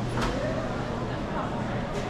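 Busy dining-hall ambience: indistinct voices over a steady low hum, with a single sharp click just after the start.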